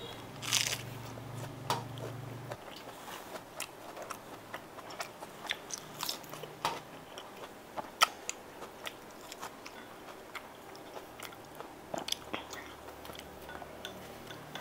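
A person chewing and biting a mouthful of lettuce and steamed pork offal close to the microphone: irregular crisp crunches and short clicks, the loudest crunch about eight seconds in.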